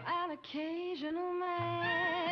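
A woman singing a show tune from a film soundtrack, with musical accompaniment. Short sliding phrases lead into a note held for about a second.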